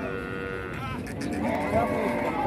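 A farm animal gives one short, steady call lasting under a second, followed by men's voices.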